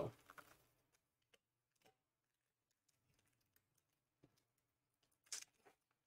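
Near silence, broken by a few faint ticks and light rustles of foil trading-card packs being handled. One brief crinkle comes about five seconds in.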